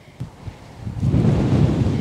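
Wind buffeting the camera microphone, low and rough, jumping up sharply about a second in as the camera is carried at a run, after a couple of soft thumps.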